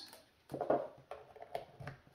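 Several light taps and knocks, scattered and irregular, from hands handling things on a desk.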